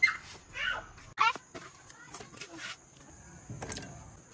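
A cleaver knocking on a wooden chopping board in short, irregular strokes as tomatoes are cut. Three short, sharp, high-pitched calls of uncertain source are the loudest sounds, all in the first second or so.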